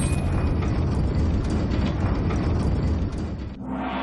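A loud, deep, noisy rumbling sound effect. About half a second before the end it cuts to music with steady notes.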